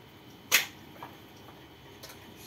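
A sharp electrical click as the mains power to the homemade UPS is switched off, followed by a much fainter click about half a second later.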